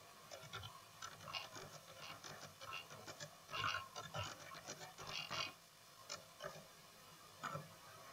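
Faint typing on a computer keyboard: a run of quick key clicks for about five seconds, then a few scattered keystrokes.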